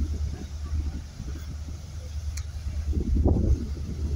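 Wind buffeting the microphone: a low, uneven rumble that swells louder about three seconds in.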